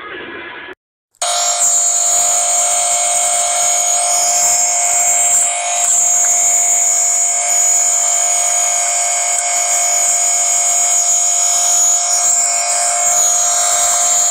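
Muffled TV cartoon audio cuts off, and after a brief dropout a loud, harsh electronic buzzing tone starts about a second in. The tone holds steady and unchanging at one pitch: the distorted drone of a fake 'screen of death' logo sequence.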